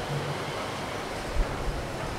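Steady background hiss with a faint low hum.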